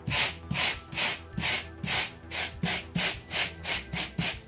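Large steel wire brush, grill-cleaning type, scrubbing back and forth across polystyrene foam to rough up and carve its surface. It makes an even run of scratching strokes, about three a second.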